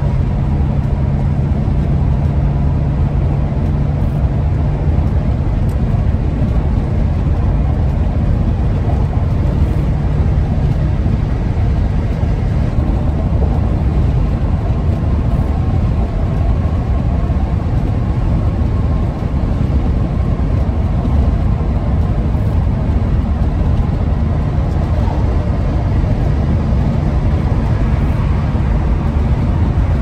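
Steady road and engine rumble inside the cab of a 2001 Ford E-350 camper van on the move, with a low hum that fades out about ten seconds in.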